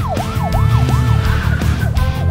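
Police car siren in a fast yelp, its pitch sweeping up and down about four times a second, over background music.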